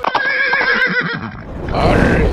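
A horse whinnying: one shaky, wavering call lasting about a second. Near the end a short noisy whoosh follows.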